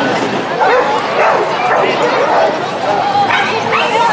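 Dogs yipping and barking, with people talking around them.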